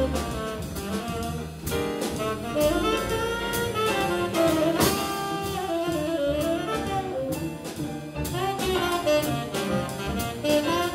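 Live jazz: saxophone playing a winding melodic line over plucked double bass and drum kit with frequent cymbal strokes.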